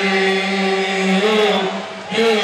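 A man's voice holds one long sung note through the concert PA with no beat behind it. The pitch wavers slightly before the note ends shortly before the two seconds are up.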